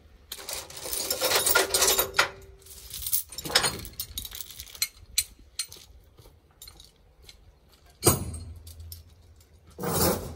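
Heavy steel tie-down chain rattling and clanking as it is pulled and handled, a dense run of clatter in the first two seconds and a shorter burst a little later. Two sharp knocks follow, one about eight seconds in and one at the very end.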